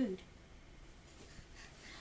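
A girl's last spoken word right at the start, then near silence: faint room tone with no distinct sounds.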